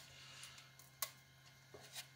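Near silence: a faint steady hum of room tone, broken by one small click about halfway through.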